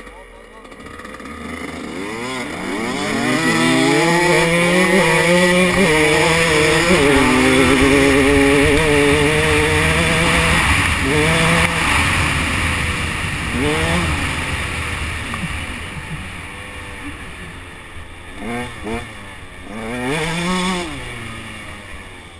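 125 cc two-stroke dirt bike engine pulling away and riding under load, building up over the first few seconds and held high for several seconds. It then eases off, with short throttle blips that rise and fall in pitch near the end.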